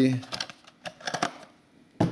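A few light clicks and taps, mostly in the first second and a bit, from a cardboard blaster box and foil trading-card packs being handled on a table.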